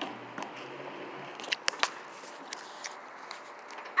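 Footsteps of a child climbing up a steel playground slide in sneakers: scattered light taps, with a few sharp ones about one and a half seconds in.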